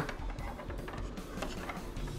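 Small, irregular clicks and taps of plastic and metal chip adapters being handled and set down on a countertop.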